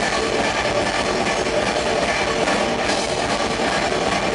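Rock band playing live: electric bass, guitar and drum kit in a dense, steady wall of sound.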